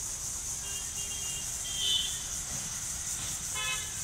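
Several short vehicle horn toots in the distance. A brighter one comes about two seconds in, and a fuller, buzzier honk shortly before the end. Under them runs a steady high hiss.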